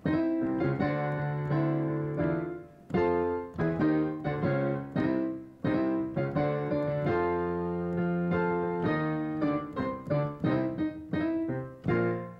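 Yamaha keyboard played with a piano sound, playing the show out: chords struck one after another, each ringing and fading before the next.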